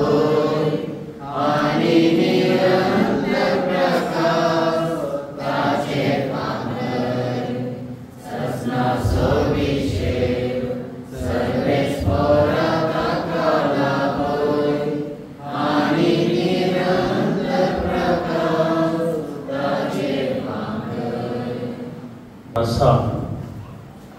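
A congregation singing a slow hymn together in unison, in phrases of about three to four seconds with short breaks between them.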